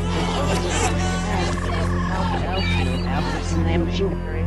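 Instrumental rock music: an electric guitar lead plays wavering, bending notes over a steady low drone.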